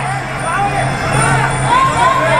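Live Muay Thai sarama fight music: a pi java (Thai oboe) playing a wavering, sliding melody over steady drumming.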